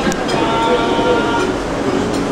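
Steady din of a busy café: a dense background of voices and clatter, with a sharp click just after the start.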